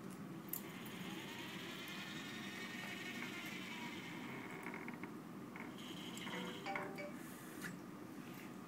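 SCORBOT-ER4u robot arm's motors whining as the arm moves its gripper down to a cube on the conveyor, with several overlapping tones that glide up and down over a few seconds. Near the end come shorter, stepped tones and a few clicks.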